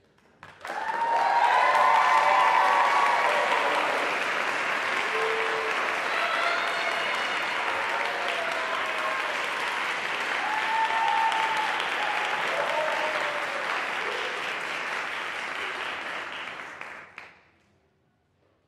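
Audience applauding, with a few voices cheering. It starts about a second in and stops fairly abruptly about a second before the end.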